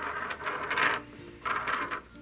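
Small plastic counting-bear figures being set down and slid together on a wooden floor, clicking and scraping in two short bursts: one through about the first second, a shorter one near the end.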